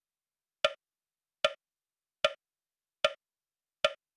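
Metronome ticking steadily at 75 beats a minute, a sharp woodblock-like click every 0.8 seconds, five clicks in all. It is the tempo set to pace the fast breaths of kapalbhati.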